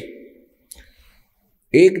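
A man's speech in Hindi trails off into a short pause broken by one faint click, then resumes near the end.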